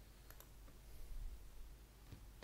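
A few faint, brief clicks from someone working a computer, over a low, steady hum.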